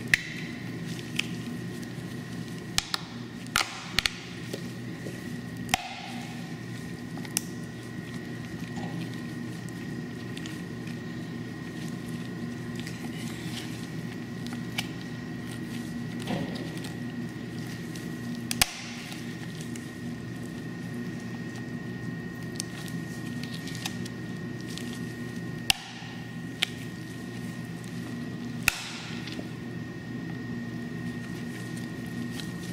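Pruning shears cutting through a dog's ribs: about a dozen sharp snaps at uneven intervals, bunched in the first few seconds and spread out later.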